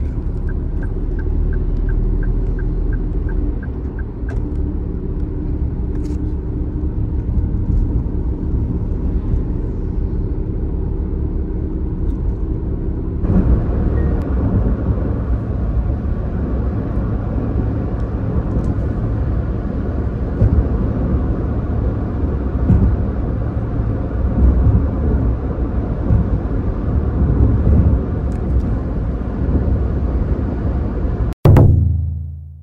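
Road noise inside a moving car: a steady low rumble of engine and tyres, with a quick run of light ticks, about four a second, in the first few seconds. A little under halfway through, the rumble turns louder and rougher as the car runs on open road.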